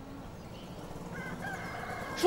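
Rural outdoor ambience fading in, with a rooster crowing faintly from about a second in.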